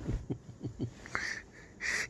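Soft, wheezy breathing close to the microphone, in short strokes several times a second, with a brief hiss near the end.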